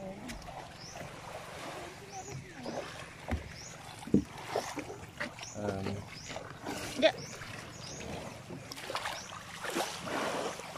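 Wading in shallow seawater beside a beached outrigger boat: scattered light splashes and knocks, with brief laughter near the start.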